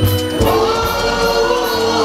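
Live band music with singing; about half a second in, the voice holds one long note over the bass.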